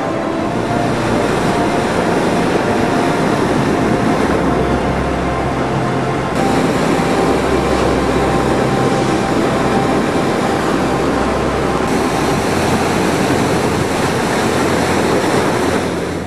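Loud, steady roar of sea surf breaking over rocks, with sudden shifts in its sound about six and twelve seconds in where the recording is cut.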